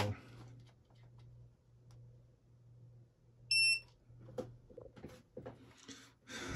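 Ninebot Max scooter dashboard giving one short, high electronic beep about three and a half seconds in, over a faint low hum.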